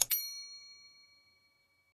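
A click followed by a single bright ding, a notification-bell sound effect from a subscribe animation, ringing out and fading over almost two seconds.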